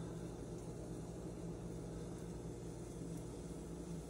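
A steady low hum with a faint hiss, a kitchen appliance running; a deeper tone within the hum stops a little after three seconds in.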